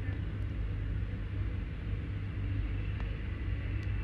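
Steady low hum under a faint even hiss of background noise, with a few faint ticks.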